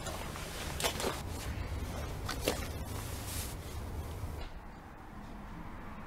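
Footsteps and a few sharp clicks and knocks as someone steps through a doorway, over a low steady hum that cuts off about four and a half seconds in.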